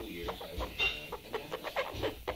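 Broody female Amazon parrot giving a quick run of short, soft calls while her back is stroked, the sounds of a hen in breeding condition. A brief higher squeak comes a little under a second in.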